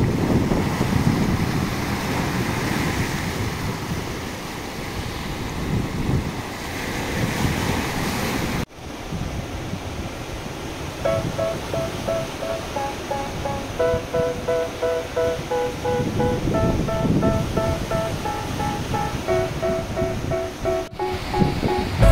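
Surf washing onto the shore with wind buffeting the microphone. After a sudden cut about nine seconds in, the surf goes on and a melody of short repeated notes comes in over it a little after halfway.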